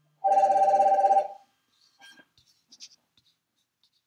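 A trilling electronic ringing tone, like a phone ringer, lasting about a second, followed by a few faint clicks and taps.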